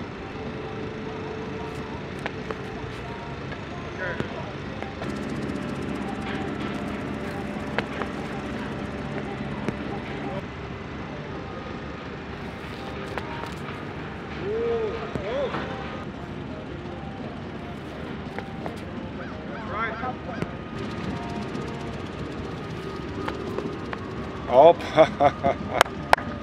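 A steady outdoor background with scattered short honking calls, one more prominent about halfway through. Near the end a loud exclamation and laughter take over.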